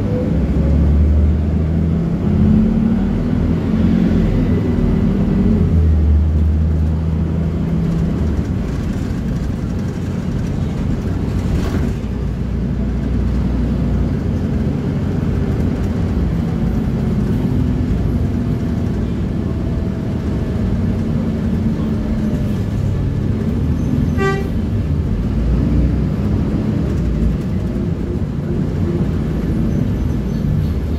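City bus running in traffic, heard from inside the cabin: a low engine or motor hum whose pitch steps up and down as the bus speeds up and slows, over road noise. A short horn toot sounds about three-quarters of the way through.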